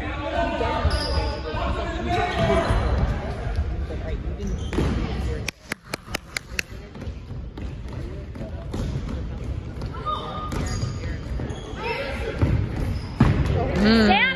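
Soccer ball being kicked and bouncing on a hardwood gym floor, with voices echoing in the hall. There is a quick run of sharp clicks midway, and squeaky high sounds near the end.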